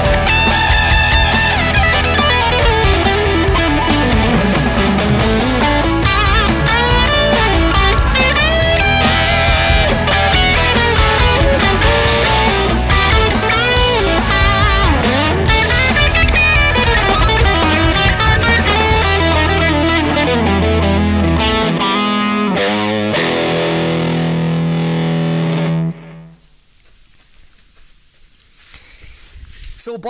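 Electric guitar played through a TC Electronic MojoMojo overdrive pedal into a Carl Martin amp: a round, slightly compressed, dense overdriven tone, busy lead lines with string bends, ending on a held chord that rings out and is cut off suddenly near the end.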